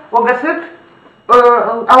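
A woman speaking Romanian, with a short pause in the middle.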